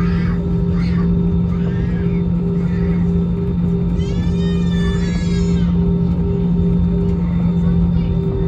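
Cabin noise of an Airbus A320-216 taxiing, heard from a seat over the wing: the CFM56 engines' steady low hum and rumble at taxi power, with a second, higher tone that breaks off briefly at regular intervals. Midway, a high voice-like call rises and falls in pitch for about a second and a half.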